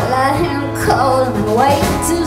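Live rock band playing: electric guitars, bass guitar and drum kit with cymbals, and a woman singing a melody that rises and falls over the band.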